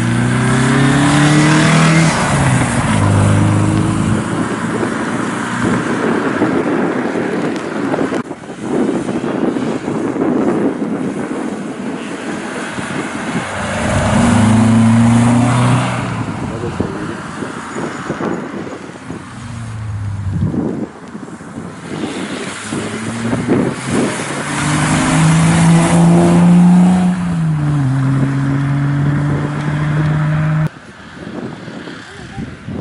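Historic rally cars accelerating hard past, one after another, each engine note climbing and dropping back in steps as it shifts up through the gears. The loudest passes come near the start, about halfway through, and building to a peak near the end.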